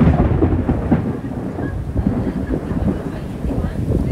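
Heavy tropical rain pouring down onto a swimming pool and lawn: a loud, dense, steady rush with a deep rumble underneath.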